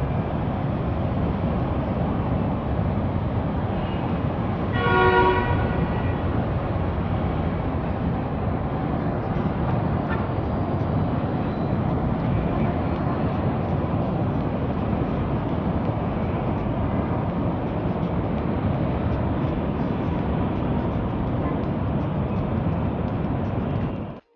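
Steady outdoor city traffic noise, with a vehicle horn sounding once, for under a second, about five seconds in.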